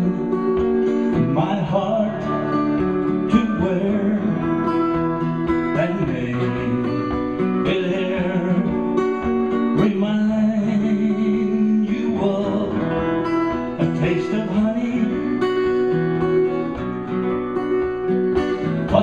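Guitar playing an instrumental passage of a soft pop song, with sustained backing notes under it.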